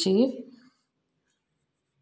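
A woman's voice humming a tune, with a rising note right at the start, fading out within the first second. After that there is near silence.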